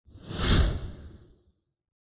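Whoosh sound effect of an animated logo intro: a single rush of noise that swells to a peak about half a second in and fades away by about a second and a half.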